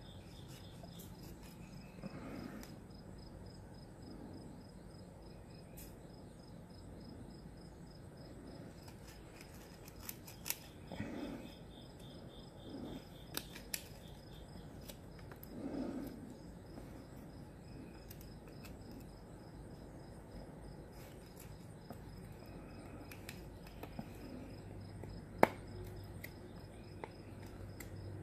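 Knife blade cutting a notch into a willow hand-drill hearth board: faint, scattered scrapes and small clicks of the blade shaving wood, with one sharper click a few seconds before the end.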